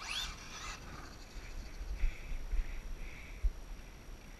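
Brushless electric motor of an RC car (Traxxas Slash VXL) whining and rising sharply in pitch as it speeds up near the start, followed by fainter spells of whine, over a low rumble of wind on the microphone.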